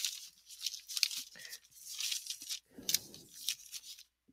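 Paper rustling and scraping under a hand moving across a sheet of lined notebook paper, in a series of short scratchy bursts.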